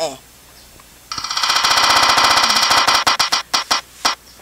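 Spin-the-wheel app on a smartphone ticking through the phone's speaker. A rapid run of electronic ticks starts about a second in, then slows to a few spaced ticks near the end as the wheel winds down.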